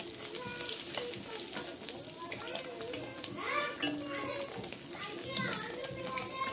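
Katla fish pieces frying in hot oil in a metal wok, sizzling steadily. A metal spatula clicks and scrapes against the wok as the pieces are turned and lifted out.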